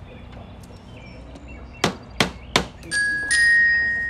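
Three quick hammer blows on a nail being driven into a wall, starting just under two seconds in. A bright, held chime-like musical note follows.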